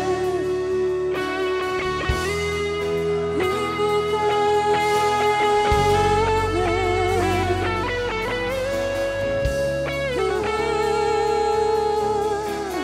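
Live worship band playing an instrumental passage: an electric guitar leads with long held notes with vibrato over the full band.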